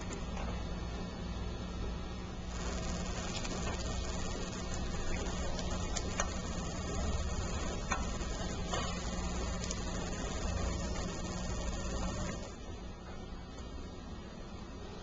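Steady low hum and hiss with a few faint clicks and taps: small handling sounds as peach slices are laid onto set gelatin in a cake mould.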